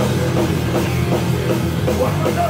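Live punk rock band playing an instrumental stretch with no vocals: electric bass and guitar with a drum kit keeping a steady beat, loud and continuous.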